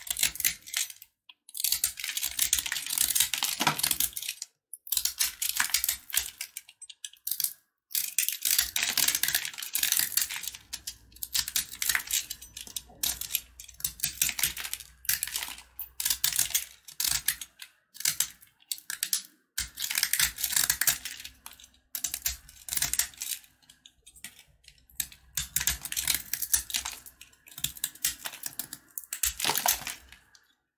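Snap-off utility knife blade cutting into a crumbly soap block: dense, crisp crackling as flakes break away, in strokes of one to four seconds with short pauses between.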